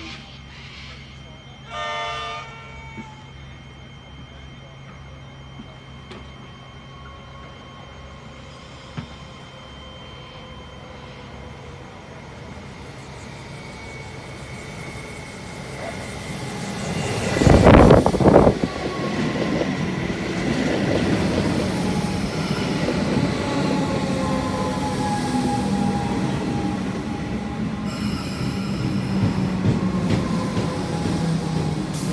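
Comeng electric suburban train giving a short horn blast in the distance about two seconds in, then approaching and passing close, loudest as the front cars go by a little past the middle. After that it runs on loudly with a falling whine.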